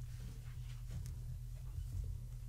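Quiet room tone: a steady low hum with a few faint, short ticks and rustles.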